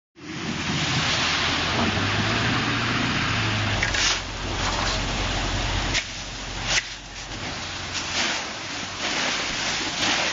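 Penny-sized hail pelting down in a heavy storm: a loud, steady hiss of stones striking, with a few sharper knocks about four, six and seven seconds in.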